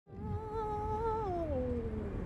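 A held pitched tone with a slight waver that slides down about an octave in the second half, over a steady low rumble of road traffic.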